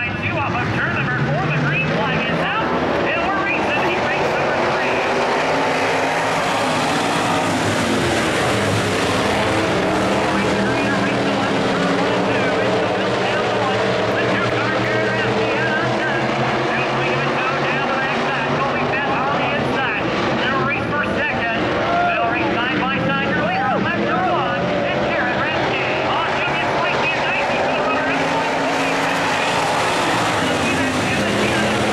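A pack of IMCA Sport Modified dirt-track race cars running together, their V8 engines overlapping and rising and falling in pitch as the field goes around the track.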